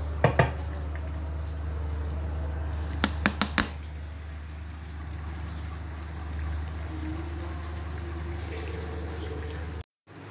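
Moussaka sauce bubbling in a clay pot fresh from the oven, over a steady low hum, with a few sharp clicks near the start and a quick run of four about three seconds in.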